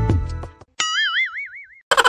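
Background music with a steady beat fades out about half a second in. It is followed by a comic 'boing' sound effect whose pitch wobbles up and down for about a second. Just before the end a quick run of short plucked, twangy effect notes begins.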